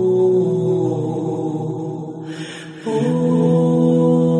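Slow, droning background music of long held chords. It thins out and dips a little after two seconds, then a new, fuller chord swells in about three seconds in.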